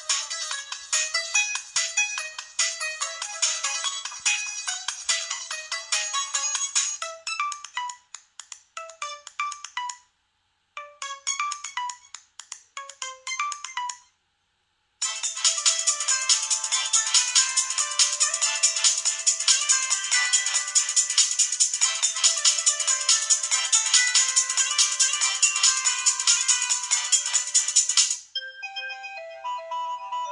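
HTC Inspire 4G playing its preloaded ringtones one after another through its own speaker. Each short electronic melody is cut off as the next is chosen, with brief breaks about a third of the way in and a second of silence about halfway. A denser, louder tone follows, and a different, sparser one starts shortly before the end.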